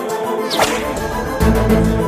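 Dramatic TV-serial background score with a sharp whip-crack swish effect about half a second in. A low booming hit follows about a second and a half in, marking a shocked reaction.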